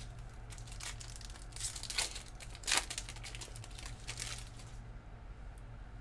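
Trading card pack wrapper crinkling and tearing as it is opened by hand, in several short rustles that die down about five seconds in.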